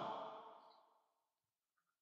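A man's voice trailing off at the end of a phrase into a breath over the first half-second, then near silence.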